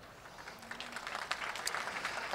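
Audience applauding faintly, the clapping growing a little about half a second in.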